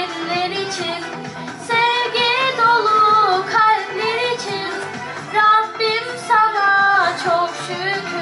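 A girl singing a devotional song into a microphone, her voice carrying a wavering, ornamented melody over instrumental backing music.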